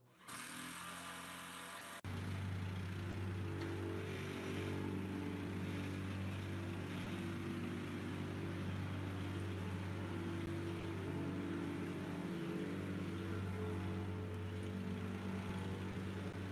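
Truck engine idling steadily. Its level jumps up sharply about two seconds in.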